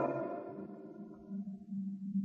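A man's voice echoing and dying away in a reverberant hall after he stops speaking, followed from about a second in by a faint steady low hum.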